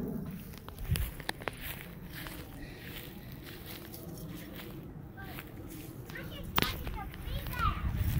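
Footsteps on grass and a few handling clicks as someone walks across a lawn, with faint children's voices in the background toward the end.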